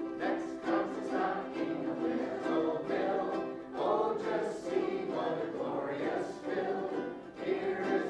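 A group of ukuleles strummed together while the players sing along in chorus.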